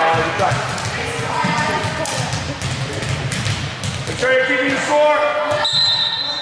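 Volleyballs struck and bouncing on a hard gym floor during a passing and setting drill, as a string of sharp smacks, with players' voices calling out, loudest between about four and six seconds in.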